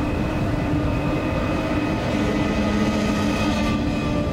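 Steady roar of rushing floodwater, with long held notes of a music score over it that change about halfway through.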